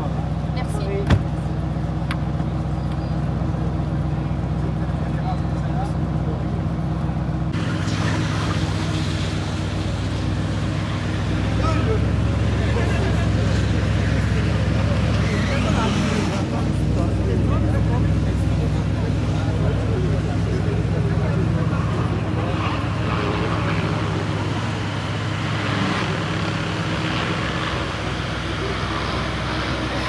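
Audi RS6 Avant's twin-turbo V8 running at idle with a steady low drone, growing a little fuller and louder after about ten seconds as the car creeps off at walking pace. Voices of onlookers are heard around it.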